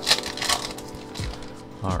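Foil wrapper of a Pokémon booster pack crinkling and tearing as it is ripped open by hand, with two sharp crackles in the first half second. Background music with steady held notes runs underneath.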